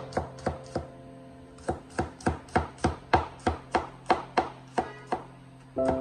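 Chinese cleaver slicing garlic cloves on a wooden chopping board. There are a few chops, a short pause, then a steady run of about four knife strikes a second.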